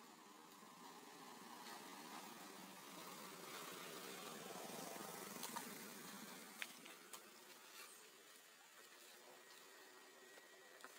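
Faint rustling that swells and fades over several seconds, with a few sharp clicks near the middle.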